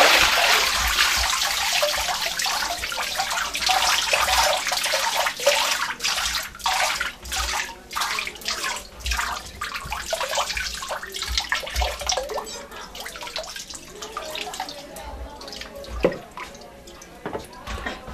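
Water pouring off a papermaking sieve just lifted out of a vat of wood-fibre pulp: loudest at first, then thinning over several seconds into a patter of drips. A single sharp knock comes near the end.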